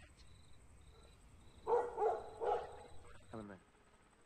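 A dog barking, three or four short barks starting a little under two seconds in, over a faint low rumble and a faint, repeated high-pitched chirp.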